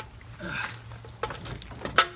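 A steel spare wheel being worked onto a hub, knocking and scraping against the brake rotor in a few sharp clicks, the loudest near the end, over a low steady hum. The wheel won't seat, which the workers take for the rotor being too big for it.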